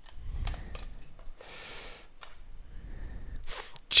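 A folding knife being handled as it is lifted out of a hard plastic case: a low rubbing rumble and a few small clicks. There is a breathy exhale about halfway through and a quick intake of breath just before speaking.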